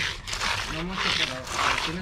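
Hand float sliding over wet concrete in strokes, a rasping swish, as it pulls the cement paste over embedded glass beads to bury them. A short low voice sound comes in the middle.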